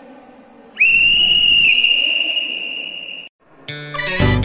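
A whistle blown in one long, steady, shrill blast of about two and a half seconds, its pitch dropping slightly partway through. Near the end, music with a strong beat comes in.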